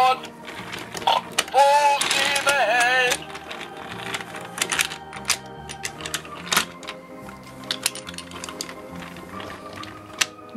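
Background music throughout, with a brief voice in the first three seconds or so. From about three seconds in, small irregular clicks and rattles of a toy train engine and truck being pushed by hand along plastic track.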